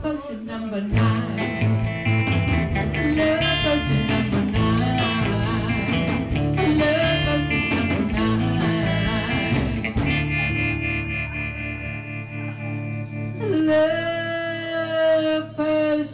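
Live rock band playing: two electric guitars, bass and drums, with a woman singing lead. Near the end the drums and bass drop out, leaving guitar chords under a long held sung note.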